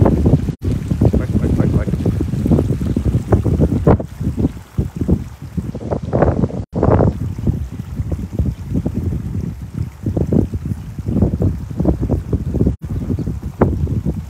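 Wind buffeting the microphone of a handheld phone, an irregular heavy rumble, with a rough crackle of short noises on top.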